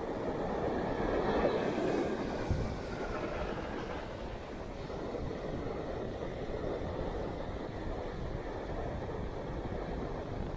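Ocean surf breaking and washing over the sand, a steady rushing noise that swells a little louder between about one and three seconds in.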